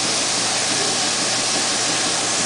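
A steady, even hiss of rushing air, with no rhythm or strokes.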